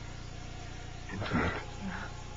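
A single soft spoken "yeah" about a second in, over a steady low hum.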